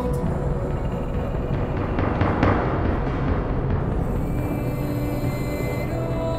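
Drums played with soft-headed mallets on toms and cymbals, a continuous rolling beat over a sustained musical backing, with one louder, brighter hit about two and a half seconds in.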